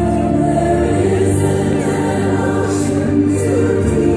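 Music: a choir singing long held chords, with organ accompaniment.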